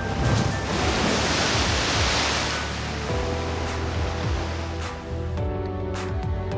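Background music with a steady beat, overlaid by the rush of a large ocean wave breaking. The wave noise swells up, is loudest about two seconds in, and fades away by about three seconds.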